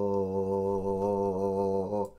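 A man's voice holding one low chanted note, steady and droning with a slight waver, that cuts off suddenly at the very end.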